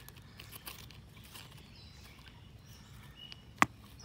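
Quiet outdoor background with faint rustling, then one sharp click near the end.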